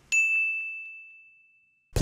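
A single high, bell-like ding sound effect, struck once just after the start and ringing away over about a second and a half.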